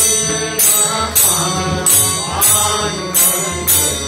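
Devotional bhajan: voices singing with harmonium and tabla, over a sharp bright beat that keeps time a little under twice a second.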